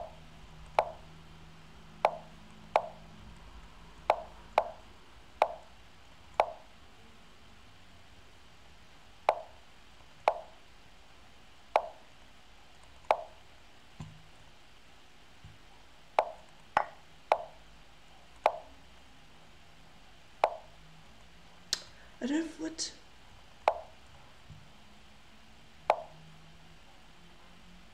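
Lichess online chess board's move sounds: about twenty short wooden knocks, one for each move, coming at an uneven quick pace as both players move rapidly in a bullet game. A short burst of other sound comes about 22 seconds in.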